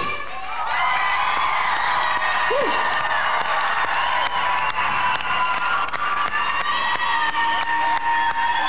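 An audience cheering and applauding, with many high-pitched screaming voices, just as the pop song's music stops.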